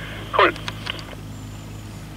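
A single spoken word about half a second in, over a steady low hum with faint hiss.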